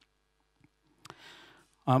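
A pause close to a handheld microphone: near silence broken by a faint click about half a second in and a sharper click about a second in, followed by a soft breath, then a man's 'um' right at the end.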